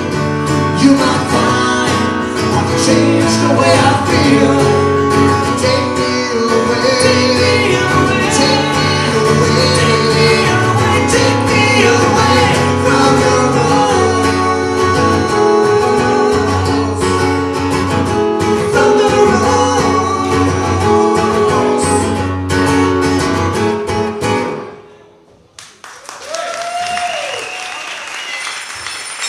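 A country song performed live on acoustic guitar with male lead vocals, stopping suddenly about three seconds before the end. Audience applause follows.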